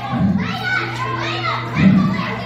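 Children's voices calling out and chattering, several high voices overlapping, over a steady low hum.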